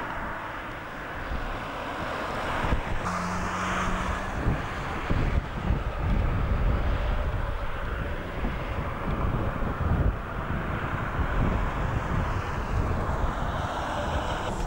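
Wind buffeting an outdoor camcorder microphone, with uneven low rumbles over a steady hiss, and a short steady hum about three seconds in.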